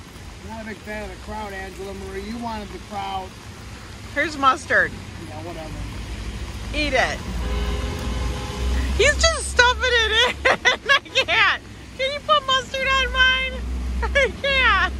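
Voices talking in short bursts over city street traffic on wet roads; a vehicle rumbles past about halfway through.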